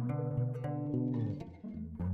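Background music of plucked string notes over a low, steady bass tone.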